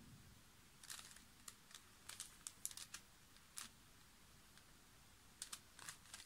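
Faint, scattered plastic clicks of an Axis Megaminx twisty puzzle's layers being turned by hand, in short runs about a second in, around two to three seconds in, and near the end.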